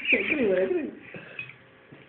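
A person's voice making a wordless, wavering gliding sound, like a hoot or coo, for about the first second, with a short high squeak at its start. After it come a few faint clicks.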